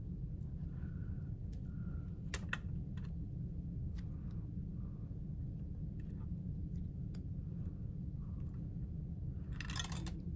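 Scattered light clicks and taps of a plastic pry tool and fingers on the cables and connectors inside an opened Xbox Series X, the sharpest about two and a half seconds in, over a steady low hum.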